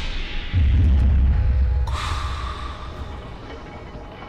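Music-and-effects logo sting: a deep boom about half a second in that rumbles on and slowly dies away, then a bright swishing hit about two seconds in, fading out.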